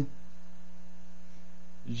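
Steady electrical mains hum, a low buzz with a few fixed low tones and nothing else over it.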